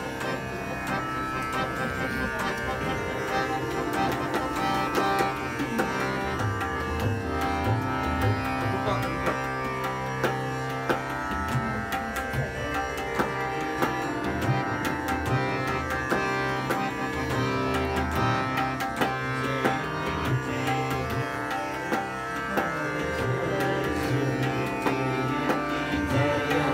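Indian classical ensemble: harmonium melody over a steady tanpura drone, with tabla strokes keeping a regular rhythm.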